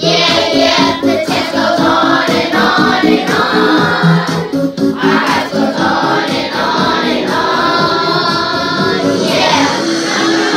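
Group of children singing a pop-style song together over backing music with a steady beat.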